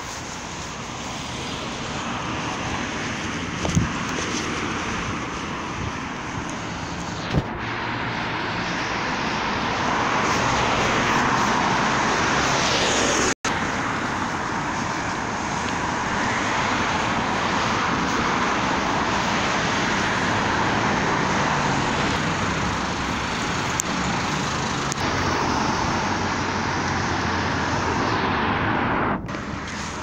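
Road traffic noise from cars driving along the street, growing louder about a third of the way in and staying steady, with a couple of small knocks early and a momentary cut-out about halfway through.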